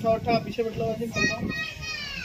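Children's voices calling, ending in one long high-pitched call that falls in pitch.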